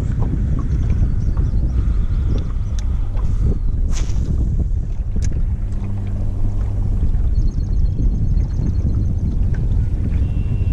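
Wind buffeting the microphone in a steady low rumble, with scattered faint clicks and one sharp knock about four seconds in. A faint, fast run of high ticks comes in near the end.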